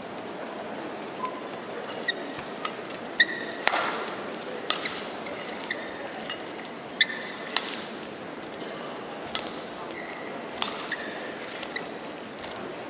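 Badminton rally: a feather shuttlecock struck back and forth with rackets, about a dozen sharp hits from about two seconds in, with brief high squeaks of court shoes on the floor between some hits, over a quiet crowd murmur in a large hall.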